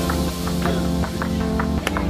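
Background pop song with a steady beat, about four drum ticks a second.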